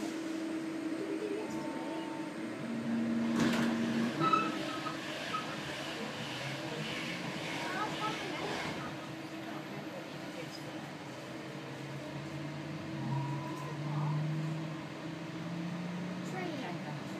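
Interior sound of a Class 323 electric multiple unit: a steady electrical hum runs throughout. Near the end the traction motors' low tone steps up in pitch as the train gathers speed.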